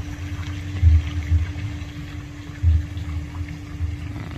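Pond fountain jets splashing onto the water, with a steady low hum running under it. Low dull thumps come in short clusters about a second in and again near three seconds.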